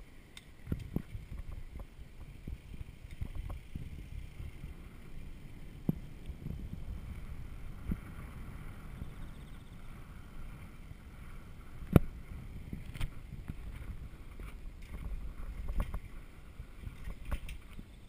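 Low rumble of wind on the microphone and bicycle tyres on tarmac while riding, with a few sharp knocks, the loudest about twelve seconds in.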